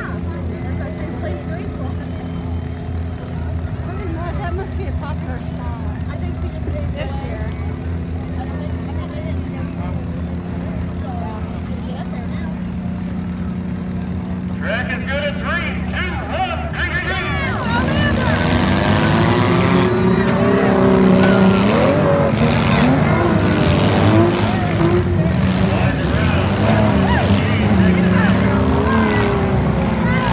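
Several demolition derby cars' engines idling in a steady drone, then about two-thirds of the way in the engines rev up louder and waver in pitch as the cars drive off again.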